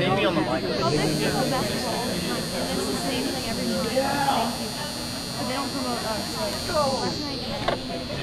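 Indistinct chatter of spectators in the stands, with a steady high-pitched whine that comes in about a second in and stops near the end.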